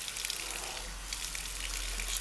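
Water from a salon shampoo-basin sprayer running in a steady hiss onto hair and into the basin, wetting the hair lightly, with a low rumble underneath in the second half.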